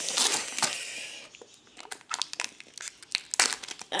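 Foil Pokémon TCG booster-pack wrapper being torn open and crinkled by hand: a dense burst of crinkling and tearing in the first second or so, then softer, scattered crinkles and clicks.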